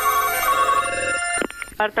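A telephone ringing, a steady multi-tone ring that stops with a click about a second and a half in as the call is picked up. A voice answers near the end.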